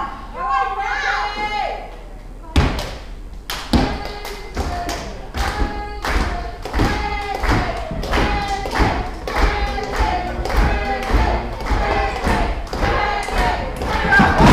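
Wrestling blows landing on a downed opponent and the ring canvas: a run of sharp thuds, about one or two a second, starting a few seconds in, with voices shouting between the hits.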